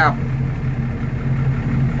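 Hino RK bus's diesel engine running at a crawl, a steady low drone heard inside the passenger cabin as the bus creeps along in a traffic jam.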